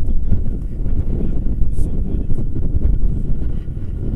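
Wind buffeting the microphone: a loud, uneven low rumble that rises and falls in gusts, with some faint rustling over it.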